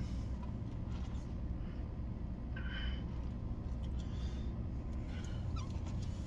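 Steady low hum of a pickup truck idling, heard from inside the cab, with a brief faint higher-pitched sound about halfway through.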